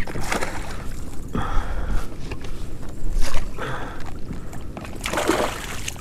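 A hooked fish splashing at the water's surface beside a kayak as it is fought in close, in irregular bursts of splashing.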